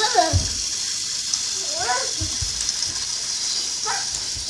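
A young child making short wordless vocal sounds that slide up and down in pitch, three times, with heavy thumps of bare feet stomping on a carpeted floor just after the start and again a little past halfway, over a steady hiss.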